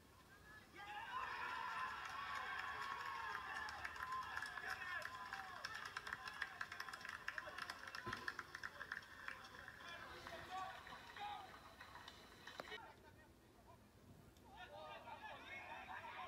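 Many voices shouting and cheering at once, fairly faint. The sound builds about a second in and cuts off abruptly about three-quarters of the way through, followed near the end by a few voices talking.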